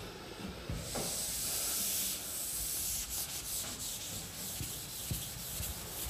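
Board eraser rubbing chalk off a chalkboard, a dry hissing rub that runs on throughout and is a little louder between about one and two seconds in.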